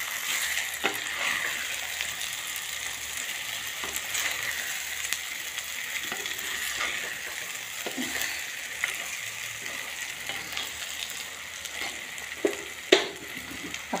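Eggplant bharta sizzling in oil in a clay pot as a steel spoon stirs it, with a steady hiss and occasional clicks and scrapes of the spoon against the pot, the sharpest near the end. It is the spiced mash being roasted for a few minutes after the masala goes in.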